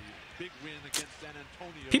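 Faint basketball game broadcast audio: quiet play-by-play commentary, with one sharp click about a second in.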